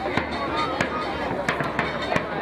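Sideline noise at a rugby ground: voices shouting and calling, with several sharp bangs at irregular intervals.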